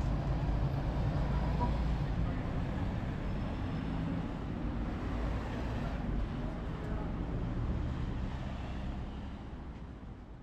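City street traffic, with a bus engine running close by and road vehicles passing. The steady traffic noise fades out near the end.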